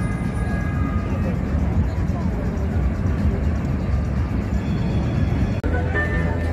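Busy outdoor city ambience: many people talking at once over a steady low rumble. Near the end the sound changes to music playing among a crowd.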